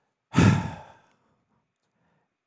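A man sighs once into a close microphone: one breathy exhale that starts about a third of a second in and fades out within a second.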